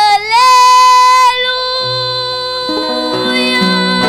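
A woman singing into a microphone, holding one long note that steps up in pitch just after the start and holds for about a second, then goes on lower. Acoustic guitars and an electric bass come in under her voice about halfway through.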